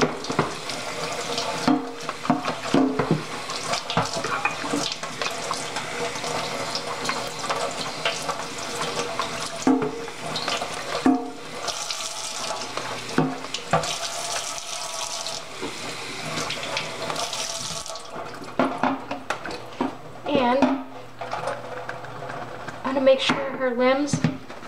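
Kitchen tap running into a stainless steel sink while a soaked cloth doll body is rinsed and squeezed under the stream. About three-quarters of the way through the water stops, leaving short wet squelches and drips as the body is wrung out.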